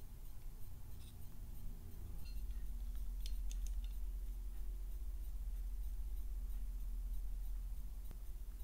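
A few light metallic clicks as a steel digital caliper is set against a camshaft lobe and handled, over a steady low hum that grows a little louder about two seconds in.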